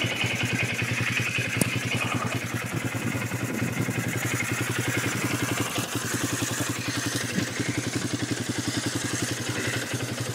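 Quad bike (ATV) engine running steadily at low revs, its firing pulses even, with no revving.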